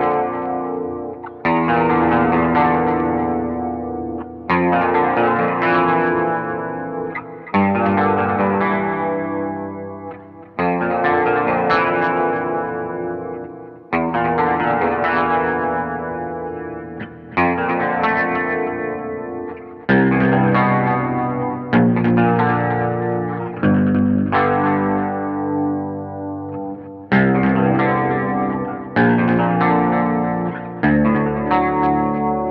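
Squier Bass VI played through a Crazy Tube Circuits Sidekick Jr. reverb/delay/chorus pedal: chords struck one at a time and left to ring and fade, about every three seconds, coming quicker in the second half.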